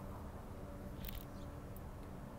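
Faint rustling of a banana-leaf parcel and its aluminium-foil wrapping being unfolded by hand, with brief crinkles about a second in and again near the end, over a low steady hum.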